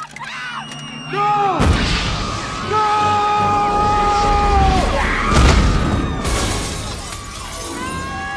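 Movie explosion sound effects: a sudden loud blast with shattering crash about a second and a half in, and a second blast around five seconds, over soundtrack music with a long held note between them.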